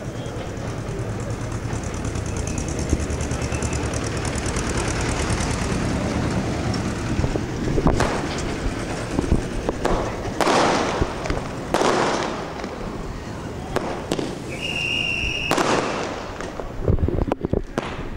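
Ground fountain fireworks spraying sparks with a steady hiss and crackle, joined from about eight seconds in by a few sharper pops.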